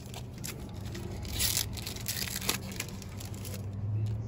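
Foil trading-card pack wrapper crinkling and being torn open by hand, loudest about a second and a half in, with a sharp rip about a second later.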